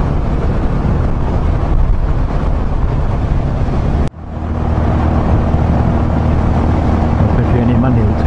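Yamaha motorcycle cruising at highway speed, its engine drone mixed with wind and road noise. About four seconds in the sound cuts out for a moment, then comes back as a steadier, lower engine hum.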